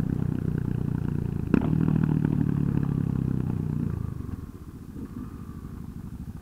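Motorcycle engine running steadily at low road speed, then falling away off the throttle about four seconds in as the bike rolls to a stop. A single sharp knock about a second and a half in.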